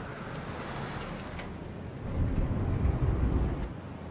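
Low rumbling noise with no tune in it, growing louder about two seconds in and easing off near the end.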